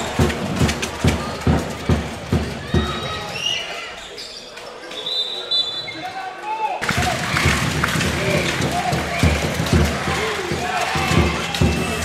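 A basketball dribbled on a hardwood court, with steady bounces about three a second. The bounces fade away for a few seconds mid-way, then start again after a sudden change in the sound.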